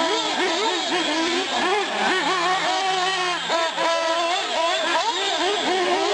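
Several small nitro RC car engines, 1/8-scale buggies and trucks, revving up and dropping off again and again as they accelerate and brake through the course, their high pitches overlapping.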